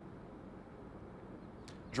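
Steady, low background street noise picked up by an outdoor microphone, a dull hum of distant traffic, with a short intake of breath just before the end.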